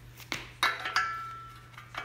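Metal clinks as a VW main bearing shell is set into its saddle in the engine case: three sharp clicks in the first second, the last leaving a short ringing tone that fades away.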